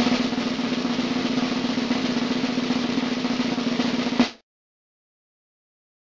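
Suspense drum-roll sound effect: a steady snare roll of about four seconds that ends on a final hit and cuts off suddenly.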